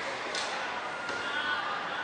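Ambient sound of a hardcourt bike polo game: faint crowd chatter and court noise, with a brief hiss about half a second in.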